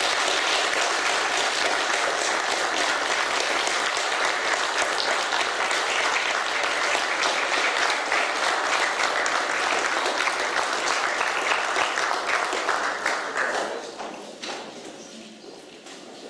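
Audience applauding steadily, then dying away near the end.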